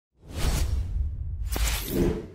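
Whoosh sound effects of a TV news logo sting: after a brief silence, two swelling whooshes over a deep low rumble.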